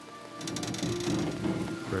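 A hand-held power cutting tool cutting into the metal body of a crashed SUV, a steady noisy grind that starts about half a second in, under background music.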